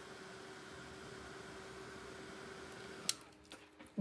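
Ranger Heat It craft heat tool blowing steadily with a faint hum while drying fresh acrylic paint. It stops with a click about three seconds in.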